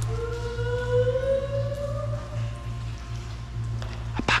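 A woman's voice singing one long held note that slowly rises in pitch, over a steady low hum.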